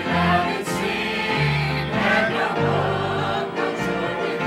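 A small church choir singing a gospel hymn together, backed by low sustained bass notes that change about once a second.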